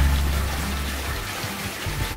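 Steady rush of water that fades gradually over the two seconds, with faint background music underneath.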